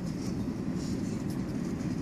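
Steady low rumble of vehicle engines, with the van towing an enclosed cargo trailer pulling away across the lot.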